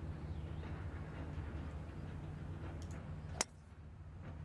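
A golf driver strikes a ball off the tee: one sharp, crisp crack about three and a half seconds in, over a steady low rumble.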